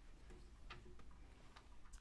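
Near silence: room tone with a low steady hum and a few faint clicks.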